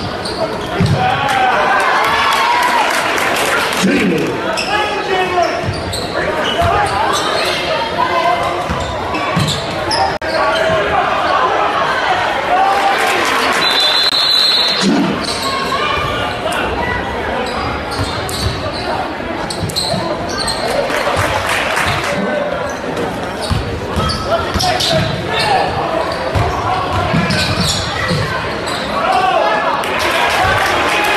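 Basketball being dribbled and bouncing on a hardwood gym floor during a game, under continuous shouting and chatter from players and spectators, echoing in a large gymnasium. A short high-pitched whistle sounds about halfway through.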